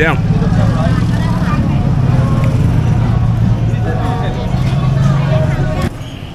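An engine running steadily with a low hum under street crowd chatter; the hum cuts off suddenly near the end.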